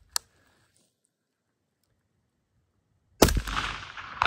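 Suppressed IWI X95 5.56 mm bullpup rifle firing a single shot about three seconds in, with a long echoing tail. A short sharp click comes just at the start.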